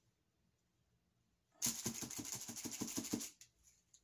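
A quick rattle of about eight knocks a second, lasting under two seconds midway through, as a wet painted canvas is jiggled and knocked over a plastic-lined tray.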